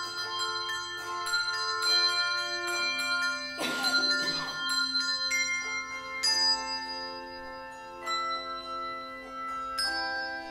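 A handbell choir ringing a piece: overlapping struck bell tones, each ringing on and fading, with new notes entering every second or so. About four seconds in, a short rush of noise sounds over the bells.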